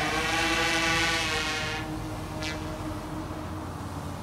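Large multirotor camera drone (Freefly Alta) climbing with a heavy LED light bar, its propellers giving a steady hum of several tones that fades as it rises away.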